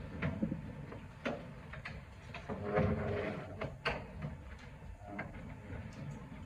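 Knocks and scrapes of chairs and table handling as several people stand up from a long table, with a faint murmur of voices, busiest about half-way through.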